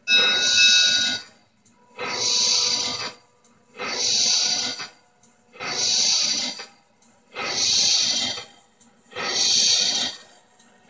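The model riverboat's sound module playing a steam-engine effect: slow, hissing exhaust chuffs, one about every two seconds, with quiet gaps between, as the paddle wheel is driven forward.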